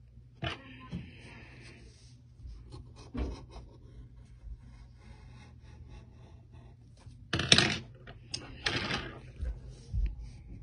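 Coloured pencil scratching across paper in short strokes, with scattered small clicks and taps; two louder strokes of about half a second come near the end.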